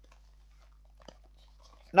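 Near silence with faint handling noise from small canvas-and-leather pouches being held and shifted, including a single small tick about halfway through. Speech starts at the very end.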